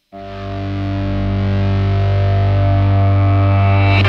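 Song intro: a distorted electric guitar chord struck once and left to ring, slowly swelling louder.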